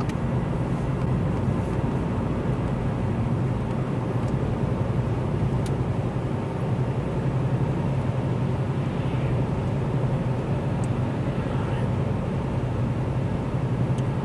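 Steady low drone of a car's engine and road noise, heard from inside the cabin while driving.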